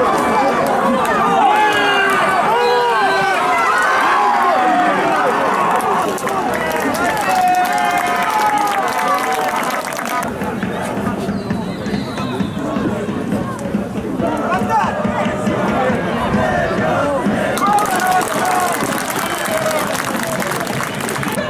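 Many voices shouting and calling at a football match, from players on the pitch and spectators in the stands, overlapping without clear words. The voices ease off briefly about halfway through, then pick up again.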